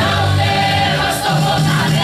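A mixed choir of men and women singing a hymn together in a church hall, one woman's voice coming through a microphone.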